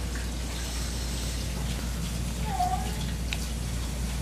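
Steady low hum and hiss of room background noise, with one brief faint whine a little past halfway.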